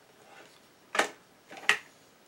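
Two short, sharp clicks of hard plastic, about a second in and again just under a second later, as a hot glue gun is handled and set down on the work table.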